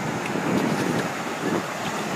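Wind buffeting the microphone in irregular gusts, over a steady hiss of surf breaking on the beach.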